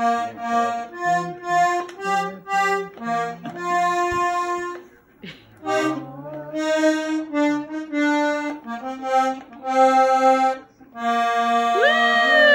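A small wooden button accordion playing a tune, melody notes over bass notes, in short phrases with brief pauses about five seconds in and again near the end.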